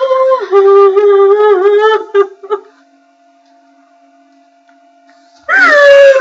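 A woman's voice wailing in long, steady held notes, half sung and half cried, the pitch stepping down once after about half a second. It breaks off after about two and a half seconds, leaving a quiet gap with a faint steady hum. About half a second before the end a loud, higher-pitched crying wail starts.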